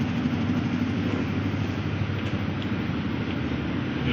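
A steady low mechanical rumble, like an engine or machine running.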